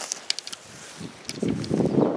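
Handling and wind noise on the camera's microphone as it is picked up and carried: a few faint clicks, then a loud, irregular low rustling that builds about a second and a half in.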